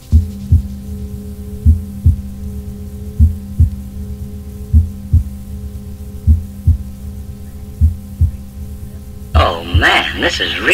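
A breakdown in a 1991 rave track: a deep double thud like a heartbeat, one pair about every second and a half, over a steady low synth drone. Near the end, the full track with a vocal comes back in.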